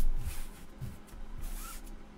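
Rustling and sliding of trading cards handled by gloved hands, loudest in the first half-second, then fading to a few faint scuffs.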